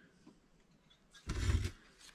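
A cardboard toy box with a plastic window being handled and pulled off a store shelf: one short rustling scrape of about half a second, about a second and a half in, after a near-quiet second.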